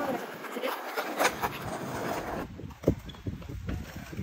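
Skateboard wheels rolling on concrete with scattered clicks. About three seconds in comes a single loud, sharp clack of a board.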